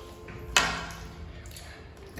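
A single sharp clink of tableware about half a second in, dying away quickly.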